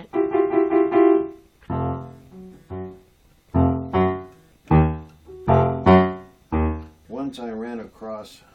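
Electric keyboard played with a piano sound: a held chord, then a halting series of about eight separate loud chords, each struck and left to ring briefly before the next.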